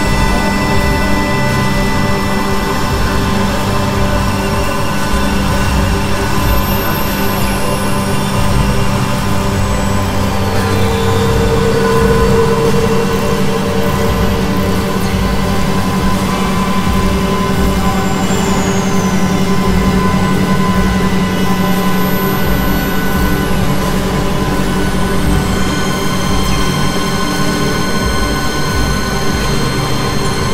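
Experimental drone music on Novation Supernova II and Korg microKorg XL synthesizers: a dense bed of steady layered tones over a low hum. A brighter mid tone swells in for a few seconds near the middle, and several thin high tones slide downward.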